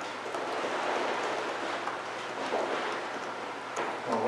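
Steady hiss of background noise with a faint low hum, and a couple of faint clicks in the second half.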